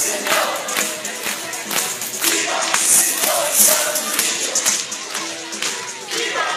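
Loud live music with singing voices over a steady beat of about two and a half beats a second, amid a crowd.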